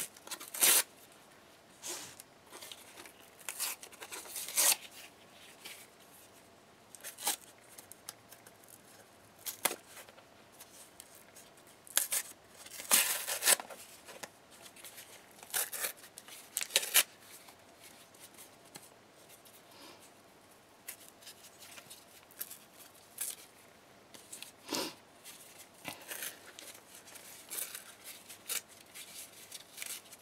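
Corrugated cardboard being torn and peeled apart by hand, the paper facing stripped from the ridged core, in short separate rips with pauses between, the longest run of tearing about twelve to fourteen seconds in.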